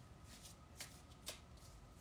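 Tarot deck being shuffled by hand, faint, with a few soft clicks of cards about a second in.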